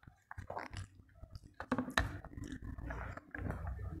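A person chewing a mouthful of rice eaten by hand, a run of irregular short wet clicks and smacks from the mouth.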